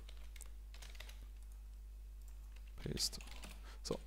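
Computer keyboard keys clicking in a few scattered presses, over a steady low electrical hum.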